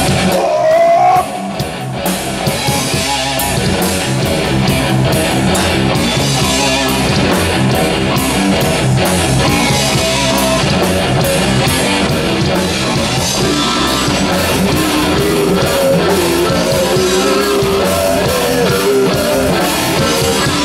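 Live metal band playing loud: electric guitar, bass and drum kit, with regular cymbal strokes. The level dips briefly about a second in, then the band plays on at full volume.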